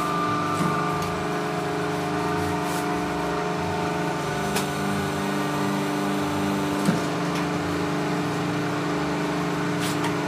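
Paper plate press machine running: a steady hum from its electric motor with three sharp clicks, the loudest about seven seconds in.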